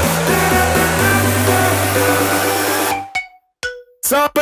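Pop music with a steady bass line and dense instrumental backing and no vocals. The track ends abruptly about three seconds in, leaving a short near-silent gap with a couple of faint tones.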